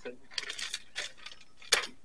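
Handling noise from small fire-lighting kit: a few light rustling clicks, then one sharp click about three-quarters of the way through.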